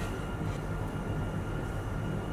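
Steady low background hum, a machine-like drone with faint thin tones above it.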